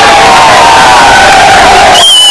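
Kabaddi crowd cheering and shouting loudly, many voices at once, with one long drawn-out shout that slowly falls in pitch running through it.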